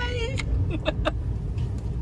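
Low steady rumble of a car moving slowly, heard from inside the cabin, with a short high wavering cry right at the start and a few sharp clicks and squeaks about a second in.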